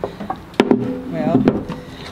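Three sharp wooden knocks spread over two seconds as a round wooden table piece is handled and set down.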